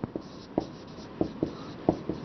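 Marker pen writing on a whiteboard: about five short taps and strokes at uneven intervals as characters are written.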